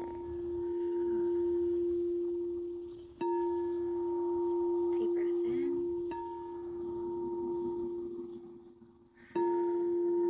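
Hot pink heart-chakra singing bowl struck with a mallet about every three seconds, three times here, each strike setting off a sustained ringing tone with a fainter higher overtone that rises and fades until the next strike.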